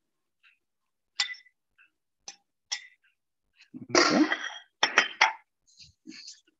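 A serving utensil clinking against a stainless pan and a ceramic bowl as noodles are served, a few sharp separate clicks, then a louder, longer burst about four seconds in and two sharp knocks soon after.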